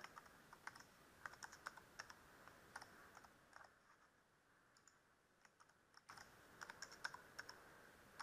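Faint computer keyboard typing as a password is entered: a run of keystrokes, a pause of about two seconds, then a second run as it is typed again to confirm.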